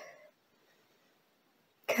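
The fading tail of a short cough from a congested woman in the first moment, then near silence until her speech resumes at the very end.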